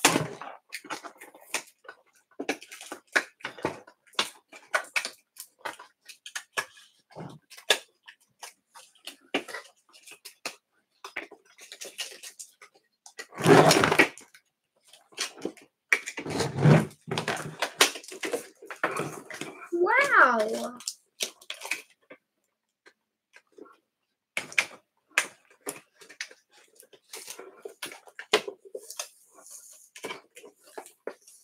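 Cardboard and plastic toy packaging being handled and opened: many small crackles and taps throughout, with a louder rustle about halfway through.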